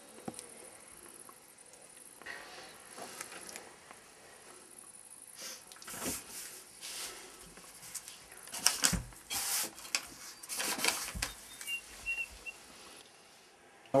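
Fingers handling a small hearing aid while its battery is changed: faint scattered clicks and rustles, busiest in the second half, then a few short, faint high beeps near the end.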